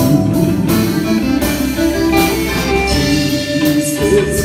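A live band playing, with drum kit, electric guitar and keyboard, behind a male singer at a microphone.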